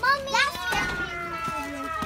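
Children's high-pitched voices squealing and calling out without words, then one long held cry.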